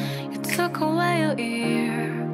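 Slow pop song: a sung melody with vibrato over sustained chords.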